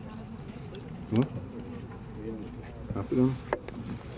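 Low murmur of a gathered crowd talking among themselves, with a few short snatches of nearby voices.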